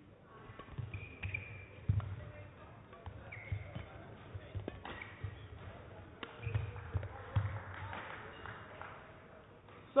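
Badminton rally in a sports hall: sharp racket strikes on the shuttlecock, short high shoe squeaks on the court floor, and the dull thuds of players' footfalls as they move and land.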